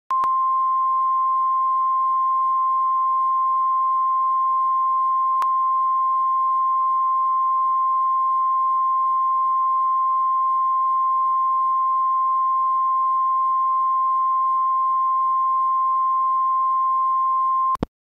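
Steady 1 kHz line-up tone, the reference tone recorded with colour bars at the head of a videotape for setting audio levels. It holds one pitch at a constant level, with a brief click about five seconds in, and cuts off suddenly just before the end.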